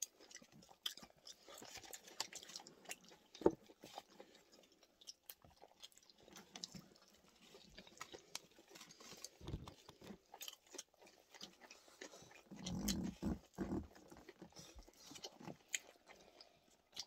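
Faint close-up chewing of sushi rolls: soft wet mouth clicks and smacks, with a louder stretch of chewing near the end.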